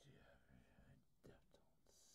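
Very faint, whispery speech: a person's voice talking very quietly.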